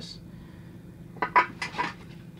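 About four quick, sharp clicks and clinks of hard plastic in the second half, as fingers take hold of a small model car's plastic display base.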